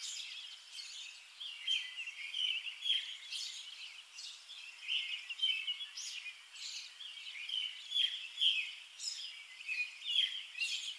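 Songbirds chirping and singing outdoors: a continuous run of short, overlapping high calls and trills.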